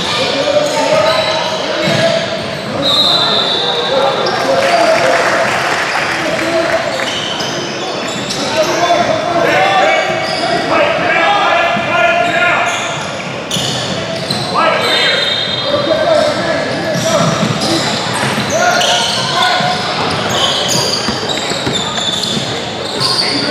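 Indoor basketball game sounds in a reverberant gym: a basketball bouncing on the hardwood court, short high sneaker squeaks, and players and spectators calling out.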